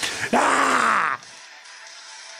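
A loud, harsh groan-like voice lasting about a second, its pitch sliding downward, then cut off suddenly.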